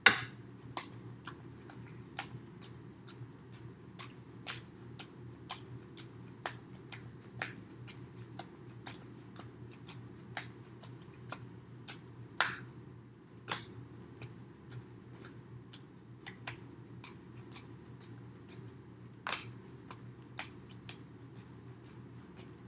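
A tarot deck shuffled by hand: a long run of soft, irregular card clicks and flicks, with a couple of louder snaps about twelve and nineteen seconds in, over a steady low hum.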